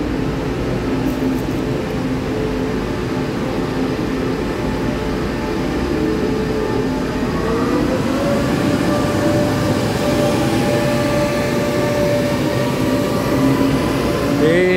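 PP Tze-Chiang (E1000 push-pull) express train running along an underground station platform: a steady rail rumble with a motor whine. About seven seconds in, the whine rises in pitch and then holds steady.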